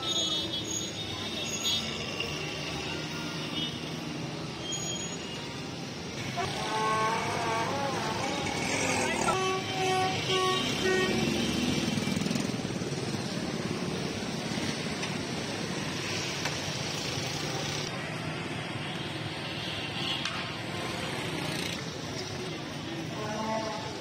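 Busy street ambience: steady traffic noise and unintelligible background voices, with a vehicle horn tooting a couple of times about ten seconds in.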